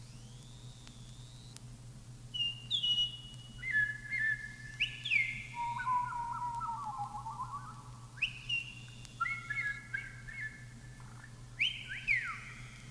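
Quiet, high whistle-like notes from a vinyl record, most sliding up into a held pitch, forming a slow, wandering phrase over a steady low hum.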